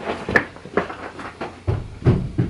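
Hurried footsteps and knocks, a quick run of about two or three a second, turning into heavier thumps near the end.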